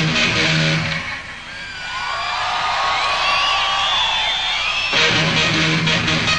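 Unaccompanied rock electric guitar solo in fast tapped runs of repeated notes. About a second in, the low notes drop out and high squealing notes slide up and down in pitch for about four seconds. The fast, dense playing then cuts back in near the end.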